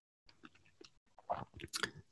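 A quiet pause in speech, then a few faint mouth clicks and lip sounds in the second half as the speaker gets ready to talk again.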